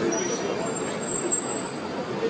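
Busy city street ambience: steady traffic noise mixed with the murmur of background voices, with a faint high whine from traffic over it.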